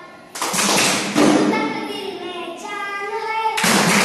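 Qawwali performance: held sung notes carried between two loud sudden bursts, one about a third of a second in and another just before the end, with hand-clapping.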